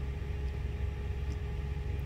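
International semi truck's diesel engine idling, a steady low rumble heard from inside the cab, with a faint steady hum above it.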